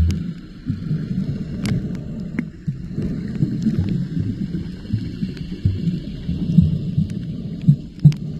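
Muffled underwater sound picked up by a camera below the surface: an uneven low rumble and thumping of moving water, with a few sharp clicks.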